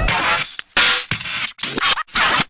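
DJ turntable scratching in the music track: a run of short scratch strokes broken by brief gaps.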